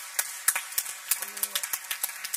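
Scattered applause: people clapping their hands in irregular, fairly sparse claps, with a brief voice about a second in.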